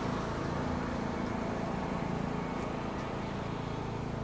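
Steady low mechanical hum in the background, even in level with no sudden sounds.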